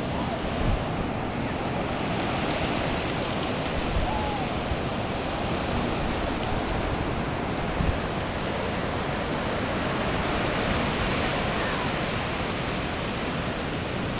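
Pacific Ocean surf breaking and washing up the beach: a steady rush of waves.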